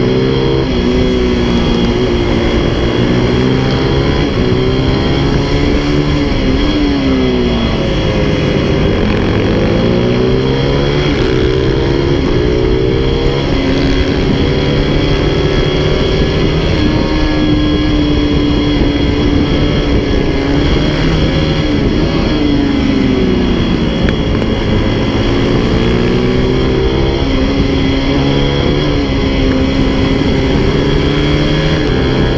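Racing motorcycle engine heard from its own onboard camera, running hard on track: the engine note climbs through the gears and drops sharply twice as the rider slows and downshifts for corners, then rises again.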